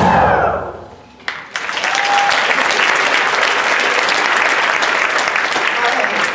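A high school band's closing sound ends on a sharp hit and rings away over about a second, then audience applause breaks out just over a second in and carries on steadily.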